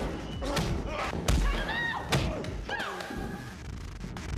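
A violent struggle: several heavy thumps and blows, with strained grunts and cries in between, one at about the middle and another near three seconds in.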